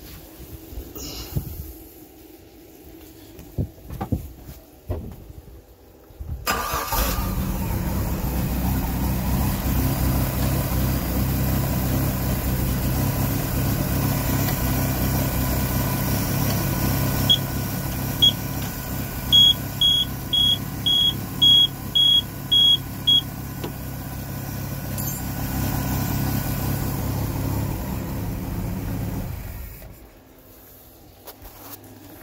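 Volvo Penta 4.3 GL V6 marine engine starts about six seconds in, after a few clicks, and idles steadily, then shuts off near the end. Partway through, the engine alarm gives a run of about ten short, high beeps, roughly two a second, as a temperature-sensor wire is shorted to ground to test the alarm circuit.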